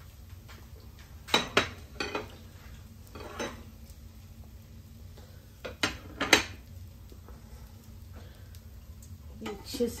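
Metal kitchen tongs and a ceramic plate clinking against cookware on a glass-top stove: a handful of short, sharp knocks, the loudest pair about six seconds in.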